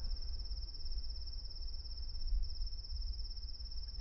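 Crickets trilling in one steady, unbroken high-pitched chirr, with a faint low hum underneath.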